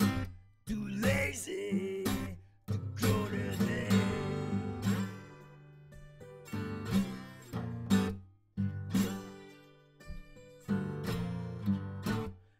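Acoustic guitar strummed in a slow blues riff, played in short phrases with brief stops between them.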